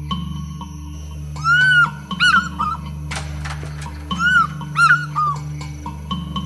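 African fish eagle calling twice, about a second and a half in and again about four seconds in. Each call is a long ringing note followed by a few shorter yelping notes, over background music with a steady low drone.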